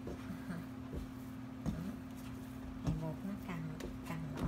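Hands kneading a soft yeast dough in a glass bowl: dull thumps and squishes as the dough is pressed and slapped against the glass, three more distinct knocks among them, over a steady low hum.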